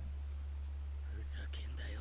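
Quiet stretch of steady low hum, with a faint breathy, whisper-like sound a little over a second in.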